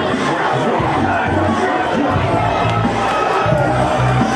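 Crowd shouting and yelling hype at a krump dancer, over loud music with a heavy bass line.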